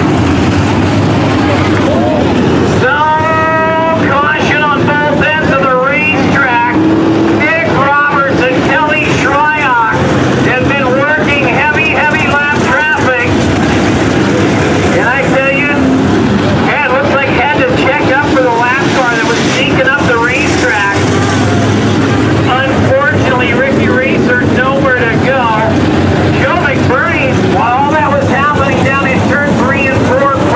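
Several dirt modified race cars' V8 engines running around the oval, their pitch rising and falling again and again.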